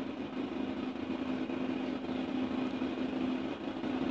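A steady low machine hum with a faint constant tone and no changes.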